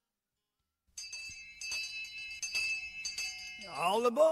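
After about a second of silence, a locomotive bell rings in steady repeated strokes, about three a second. Near the end a whistle sweeps down in pitch and then rises.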